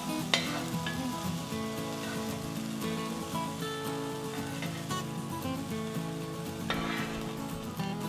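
Diced bacon sizzling in its rendered fat in a frying pan, with a slotted spoon scraping and clicking against the pan as the fried pieces are lifted out.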